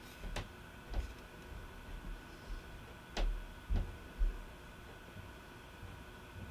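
A few faint, scattered clicks and low knocks, about five in all, from handling the computer at the desk. A faint steady high tone runs underneath.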